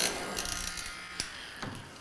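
Handheld cocktail smoking gun's small fan motor whirring, then cutting off about half a second in, followed by a few faint knocks.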